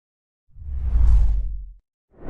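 A whoosh sound effect with a deep low rumble under a fainter hiss. It starts about half a second in, swells, and fades out over about a second and a quarter.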